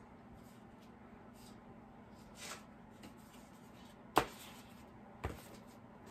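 Quiet room with a steady low hum, broken by small handling noises: a soft rustle about two and a half seconds in, a sharp knock a little after four seconds, and a smaller knock about a second later.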